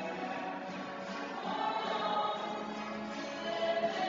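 A small group of voices singing a hymn together to acoustic guitar, with sustained, held notes in a large church's reverberant space.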